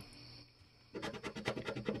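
A coin scraping the coating off a scratch-off lottery ticket in a quick run of short strokes, starting about a second in after a brief pause.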